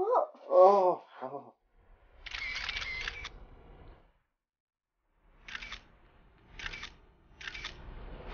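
DSLR camera shutter firing: a rapid burst of clicks lasting about a second, then three single shots about a second apart.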